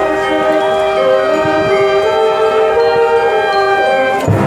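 Marching band brass (trombones, trumpets, euphoniums and tubas) playing long sustained chords, with an inner line moving from note to note over the held notes.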